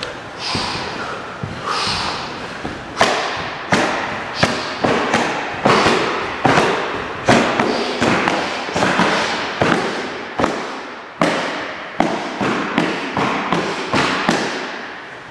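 Rapid middle-level roundhouse kicks (mawashi-geri chudan) slamming into a padded kick shield. Starting about three seconds in, a long run of sharp thuds comes at a little faster than one a second, each ringing briefly in a large hall.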